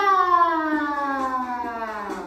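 One long pitched tone sliding slowly downward, siren-like, at the start of a recorded children's song about the ant.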